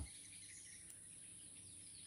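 Near silence: faint outdoor ambience, with a steady high-pitched hum, likely insects, and a few faint bird chirps.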